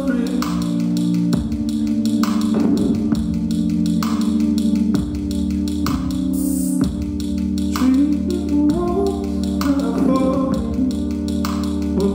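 Live electronic music: sustained keyboard chords over a deep bass line, with a regular clicking beat.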